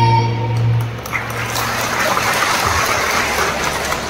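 A sung chord with electronic organ accompaniment dies away in the first second, and then a hall audience applauds, a steady patter of many hands clapping.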